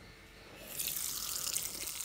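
The small brushless cooling fan of a fan-cooled LED headlight bulb spinning underwater, churning the water into bubbles: a steady hiss of stirred water that starts about half a second in. The fan keeps running while submerged.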